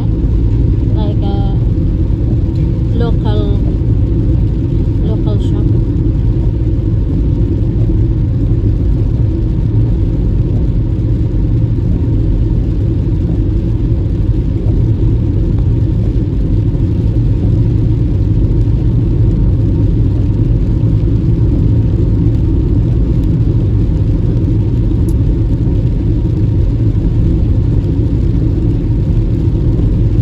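Steady low rumble of a car driving on a wet road, heard from inside the cabin.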